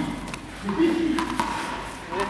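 A man's voice with no clear words, over a few short, sharp taps of juggling balls.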